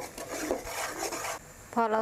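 Metal spoon scraping and rubbing around a metal pot in uneven strokes while stirring bubbling caramelised sugar and light soy sauce until the sugar dissolves; the stirring stops about a second and a half in.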